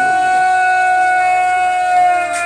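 Border guard's long, drawn-out shouted parade command of the border flag-lowering ceremony, one loud note held steady on a single breath.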